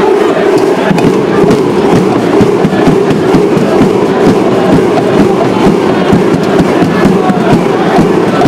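Large crowd of basketball fans in an indoor arena, loudly chanting and singing together in celebration of a win.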